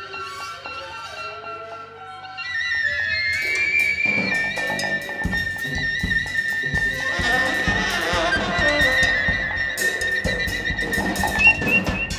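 Live free-improvised jazz: high held wind tones, with the band getting louder a couple of seconds in and drums coming in about halfway through.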